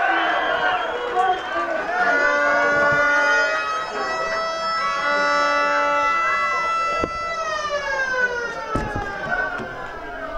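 Crowd shouting and cheering, then a long horn blast of several steady pitches at once that lasts about five seconds and slides down in pitch as it dies away.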